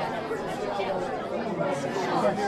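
Low background chatter of several voices murmuring at once.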